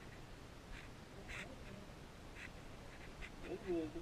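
Low, muffled room sound with a few faint taps. Near the end comes a short, muffled, gliding voice sound.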